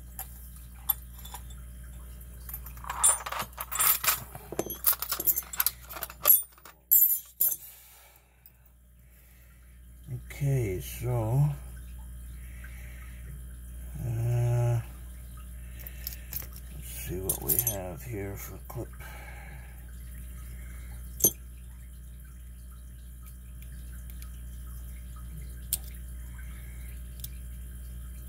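Small metallic clicks and rattles of a lock cylinder's parts being handled and taken apart, with a busy flurry of clicks a few seconds in and one sharp click later.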